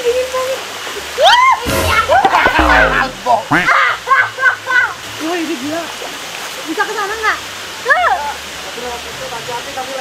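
Water splashing and sloshing as people throw it at each other with their hands in a shallow pool, over a steady rush of running water. High, excited voices shout and shriek through the first few seconds, with more short calls near the eight-second mark.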